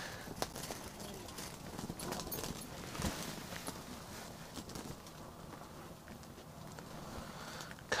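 Faint small clicks and rustles of fingers and clothing while a tiny ice-fishing jig is baited with a mealworm, over a low steady hiss.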